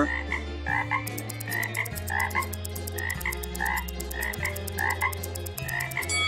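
Cartoon frog croaking sound effects, short croaks repeated several times a second, over a low bass line that changes note every second or so, with fast, even ticking joining about a second in.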